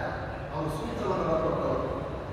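A man speaking in a continuous monologue into a microphone, lecturing.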